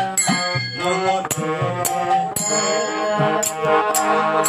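Devotional kirtan music: a harmonium holding sustained reed chords while sharp percussion strikes land about twice a second.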